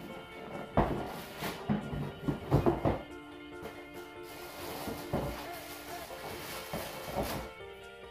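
Background music with steady held tones, over a few sharp thumps and knocks from objects being handled: one about a second in, a cluster near the middle and a couple later on.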